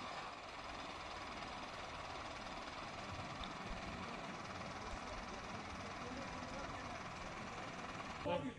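A vehicle engine idling steadily, with faint voices in the background.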